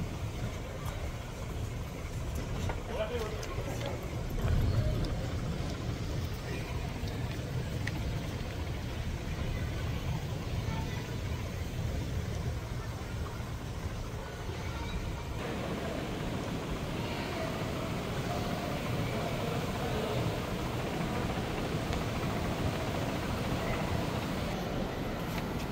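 Large indoor terminal ambience: a steady low rumble with faint, indistinct distant voices. A brief low thump comes about four and a half seconds in.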